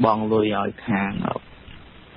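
Speech only: a voice reading news in Khmer, with a short pause near the end.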